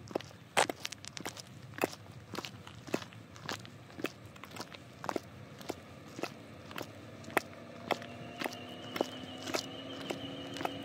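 Footsteps of 8-inch-heel platform sandals on a concrete sidewalk: sharp, even clicks about two a second as each shoe strikes. A faint steady hum with a high whine comes in under the steps near the end.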